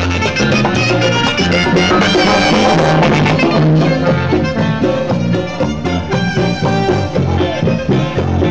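Live cumbia orchestra playing an instrumental passage, with brass over a steady percussion and bass beat and no singing.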